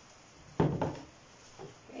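Two dull knocks against a wooden worktable, about a quarter second apart, about half a second in.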